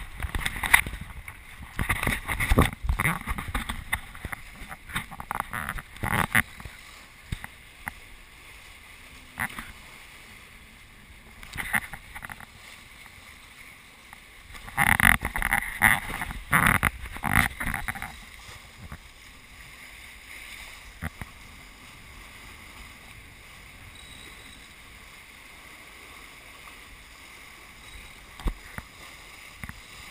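A small racing trimaran under sail: a steady rush of water and wind on the deck-mounted camera's microphone. Over the first seven seconds, and again about fifteen to eighteen seconds in, come bursts of sharp knocks and buffeting close to the microphone.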